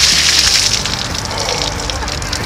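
A bucket of ice water dumped over a person's head, gushing and splashing onto him and the pavement. It is loudest at the very start and tapers off into scattered splashes.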